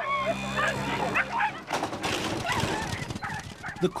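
Racing whippets yelping and whining excitedly in the starting traps, a rapid run of short, high, wavering cries as they wait for the race to start.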